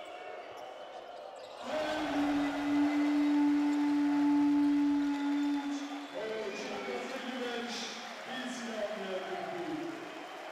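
Basketball arena buzzer sounding one long steady tone for about four seconds, marking the end of the quarter, over court and crowd noise. Crowd voices follow once it stops.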